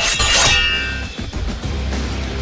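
Background music with a burst of clanging and crashing fight sound effects in the first half second, ringing away over the next second.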